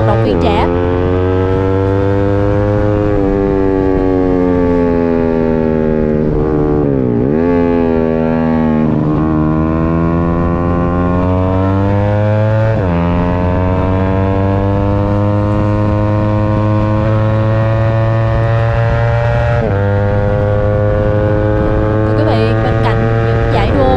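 A 150cc racing sport bike's engine heard from onboard at full throttle. The revs climb steadily and drop suddenly on upshifts about three, thirteen and twenty seconds in. Around seven to nine seconds the revs fall sharply and climb again as the bike brakes, downshifts and drives out of a corner.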